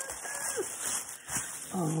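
Tissue paper rustling as it is handled and pushed aside from a handmade binder, with a brief falling tone about half a second in. A woman's voice begins near the end.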